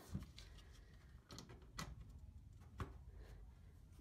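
Near silence with a few faint, short clicks and rustles of thin hook-up wire being handled as the LED leads are connected.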